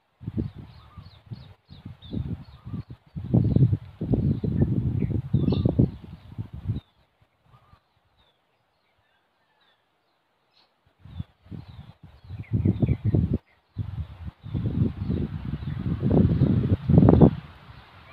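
Gusts of wind rumbling on the microphone, with small birds chirping in the trees above. The sound cuts out almost completely for a few seconds midway.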